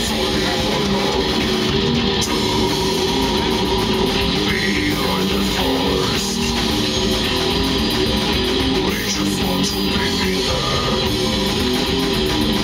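Death metal band playing live: distorted electric guitars and bass over drums with cymbals, loud and without a break.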